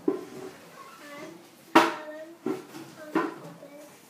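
Children's voices talking in a small room, broken by several sharp taps; the loudest comes a little before halfway.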